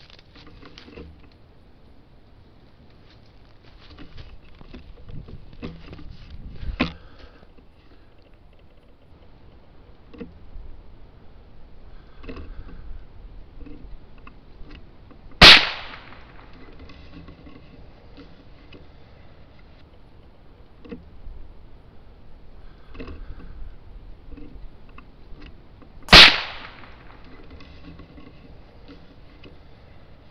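Two .22 LR rifle shots from a Ruger 10/22 semi-automatic, about ten seconds apart. Each is a sharp crack with a short echoing tail.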